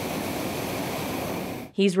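Hot-air balloon propane burner firing: a steady rushing blast that cuts off sharply near the end.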